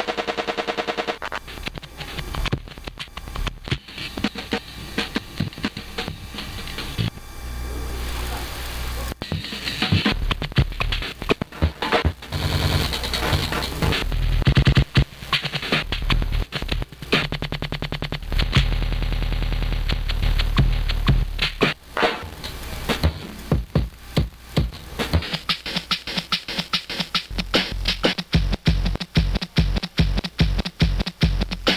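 Drum loop played back from an ISD1760 sample-player chip, stuttering as short slices of the sample are retriggered over and over in rapid, uneven repeats while its start and end knobs are turned. A steady noise bed from the synth runs underneath.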